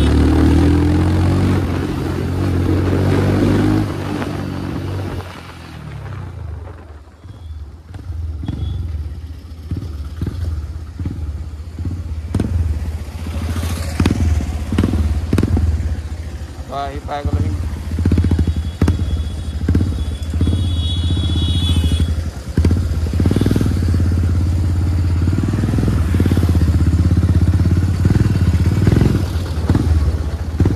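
Motorcycle engine running steadily; it eases off for a few seconds about six seconds in, then picks up again.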